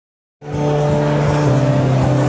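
Live country band on stage holding a chord, which starts suddenly about half a second in.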